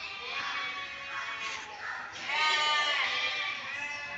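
Goats bleating: two long calls, the second, louder one starting about two seconds in.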